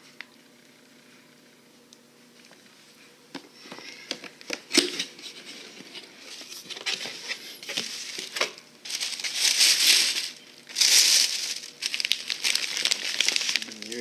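Clear plastic packaging bag around a cable crinkling and rustling as it is handled. It starts a few seconds in, with a sharp crackle about five seconds in, and is loudest in a dense spell near the end.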